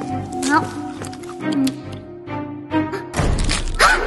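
Cartoon background music with a character's wordless voice sounds and short sound effects over it; a louder, noisy hit lasting about a second fills the end.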